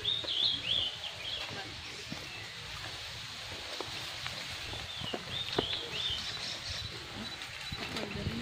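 A small bird singing a short phrase of quick, high chirping notes, twice, about five seconds apart, over a steady background of outdoor noise with a few faint clicks.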